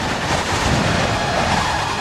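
Stormy wind sound effect: a steady, rushing whoosh of noise.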